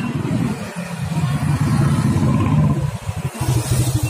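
A motor vehicle's engine running close by, loudest about two seconds in, with a low rumble.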